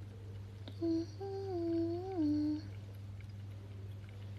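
A woman humming a short phrase of about three notes, starting about a second in and ending on a lower note, over a steady low background hum.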